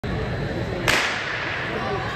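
Starter's gun firing once about a second in to start a 60 m hurdles race: a single sharp crack that rings on in the indoor hall.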